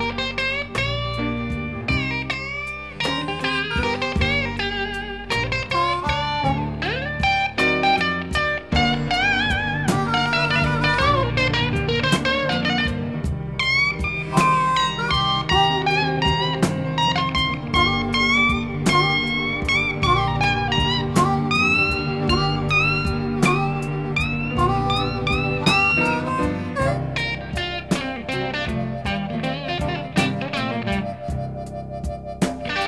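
Blues recording in an instrumental stretch: a guitar solo with notes that bend and glide in pitch, over bass and a steady drum beat.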